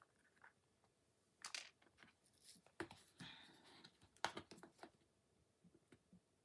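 Faint handling of a clear plastic rhinestone storage wheel: short plastic clicks and a rattle of small glass gems inside, in a few bursts, the sharpest click about four seconds in.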